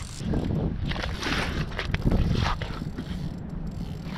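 Ice-fishing reel clicking and whirring as line is reeled in and pulled out against a big rainbow trout hooked below the ice, mixed with irregular knocks of handling.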